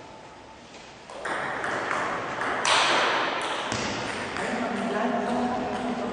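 Table tennis ball being struck with sharp pings during a rally. About a second in, a loud noisy din rises and lingers in the echoing hall, with a voice near the end as the point finishes.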